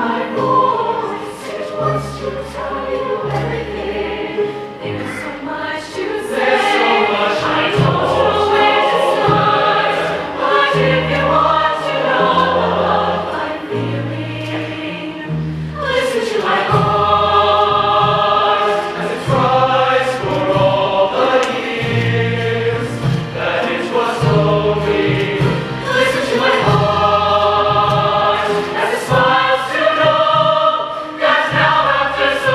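Large mixed show choir singing in full harmony over instrumental accompaniment with a steady bass line, the voices swelling louder about six seconds in and again about sixteen seconds in.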